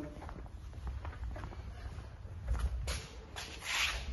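Footsteps on a tiled floor and the rubbing of a handheld phone as its holder walks, with faint ticks, a single click about three seconds in and a short rustle near the end.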